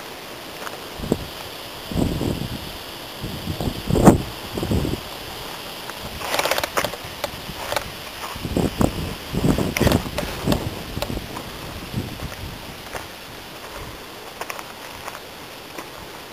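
Irregular rustling and bumps from a handheld camera carried through brush along a dirt path, coming in uneven bursts a second or two apart over a steady outdoor hiss.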